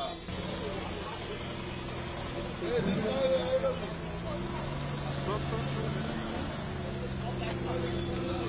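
Vintage car engine running at low speed as the car rolls slowly past, a steady low hum whose note shifts about four seconds in, with voices in the background.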